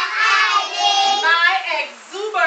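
Young children singing together, with a few notes held in the middle.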